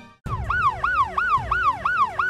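Ambulance siren wailing in a quick up-and-down sweep, about three cycles a second, starting about a quarter second in, over a low rumble.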